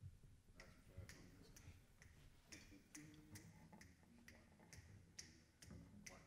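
Faint, evenly spaced clicks, about two a second, over near silence: a tempo being counted off before a jazz band comes in.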